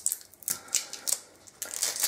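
A string of light, sharp clicks and taps, about six or seven in two seconds, from plastic cosmetic bottles and packaging being handled.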